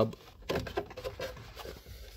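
Plastic lower dashboard trim cover being unclipped by pressing its release tab: a short click about half a second in, then light plastic handling noise as the cover comes away.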